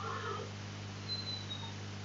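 Faint meow-like cat call right at the start, over a steady low hum, with a thin high whistling tone about a second in.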